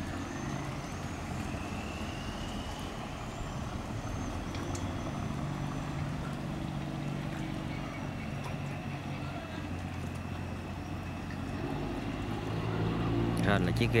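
Inboard engine of a wooden canal cargo boat running steadily at low speed, a low even hum that grows a little louder near the end as the boat comes closer.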